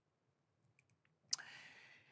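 A single sharp click about a second and a third in, with a short fading ring after it, preceded by a few fainter ticks; otherwise very quiet.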